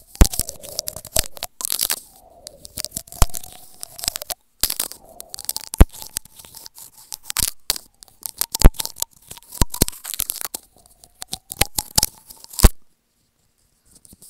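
Teeth nibbling and biting on a small microphone held in the mouth, giving close, irregular crackling clicks and crunches. The clicks stop suddenly about a second before the end.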